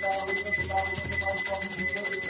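Devotional music with a wandering melody, over a bell ringing without a break.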